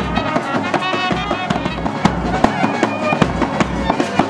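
Live wedding band music: a clarinet carrying a lively melody with brass, over a steady beat of sharp percussion strokes.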